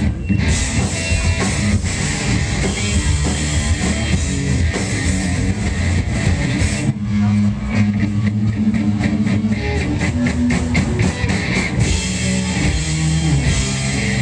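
Live rock band playing loud: distorted electric guitars, bass and drum kit. About seven seconds in the sound briefly drops, then the drums come back in with a run of fast, even strokes.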